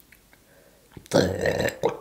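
A woman's single gurgly burp, starting about a second in and lasting most of a second.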